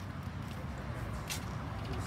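Low, steady outdoor background rumble, with one short, sharp noise a little past halfway.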